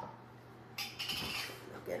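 A short squeaky scrape about a second in, as a glass jar is set down on the stone countertop.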